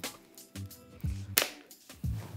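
Plastic bottle of soda water being unscrewed, with one short, sharp hiss of escaping carbonation gas about one and a half seconds in, over quiet background music.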